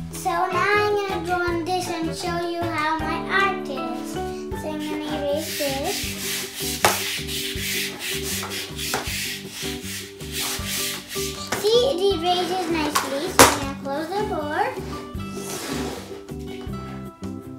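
A chalkboard eraser rubbing back and forth across a chalkboard, heard as a scratchy rubbing from about five seconds in until about eleven seconds.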